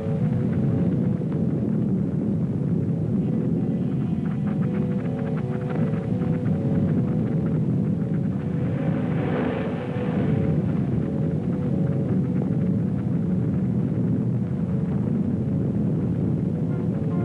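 Film soundtrack: a deep, steady rumble under slow, low orchestral music with short repeated notes, and a brief hiss swelling up about nine seconds in.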